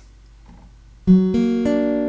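Steel-string acoustic guitar, fingerpicked: about a second in, a chord is picked note by note, three notes a quarter second apart from the lowest up, all left ringing. It is the major-third version of the chord just shown, made by moving the index finger up one fret, and it sounds much friendlier than the minor form.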